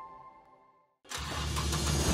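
Sustained notes of an intro jingle fade out to silence, then about a second in a sudden steady wash of noise with a deep rumble starts.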